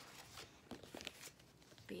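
Faint rustling and flapping of paper pages, with a few soft taps, as a picture book is closed; a word is spoken at the very end.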